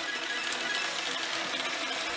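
Pachinko hall din: a steady clatter of steel pachinko balls running through the machines, mixed with their electronic music and effects.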